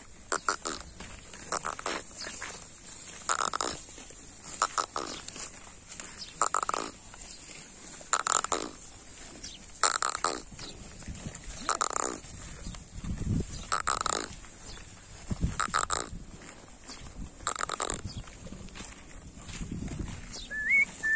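Sounds from a herd of Kankrej cattle: short sounds repeat about every two seconds, with a couple of deeper sounds in the second half.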